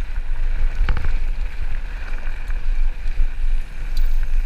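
Mountain bike running fast down a dirt singletrack: heavy wind rumble on the microphone over tyre noise and rattling from the bike, with a sharp knock about a second in.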